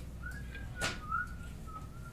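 A person whistling a few soft, wavering notes, with a sharp click near the middle.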